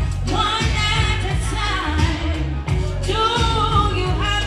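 Live vocals sung through a microphone over a loud amplified backing track with a heavy, steady bass beat.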